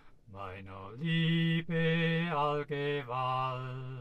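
A man singing a Swiss folk song in German without accompaniment, holding long sustained notes.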